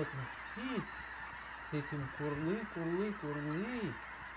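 A flock of geese honking in flight: one call about half a second in, then a run of several honks through the second half, over a steady hiss.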